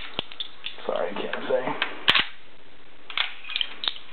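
Metallic clicks and scrapes of a .30-06 cartridge being pressed into the en-bloc clip in an M1 Garand's magazine, with one sharp click about two seconds in and a quick run of smaller clicks near the end.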